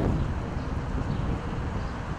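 Steady low outdoor rumble, slowly easing off a little over the two seconds.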